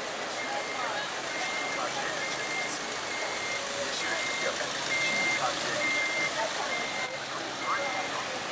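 Audible pedestrian crossing signal beeping: one short high tone about every 0.8 seconds, steady and even. It sounds over the voices and noise of a busy street, with one sharp knock about seven seconds in.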